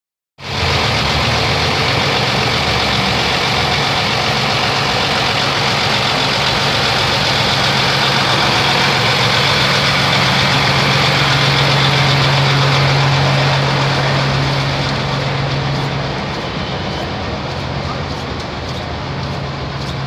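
Tractor-trailer's diesel engine idling close by, a loud, steady low hum over street noise. It grows somewhat quieter a little past the three-quarter mark.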